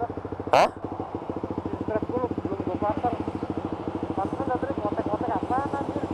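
Small motorcycle engine idling with a steady, rapid even pulse, plus a short loud burst about half a second in.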